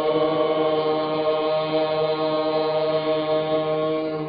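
A chanting voice holding one long, steady note.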